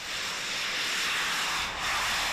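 Jet suits' small turbine engines running as pilots fly past: a steady, hissing rush of noise that swells slightly toward the end.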